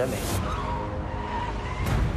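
Dramatic suspense sound effect: a noisy whoosh at the start, then a low rumble under a held high whine that bends and rises, ending in a sharp rising swish.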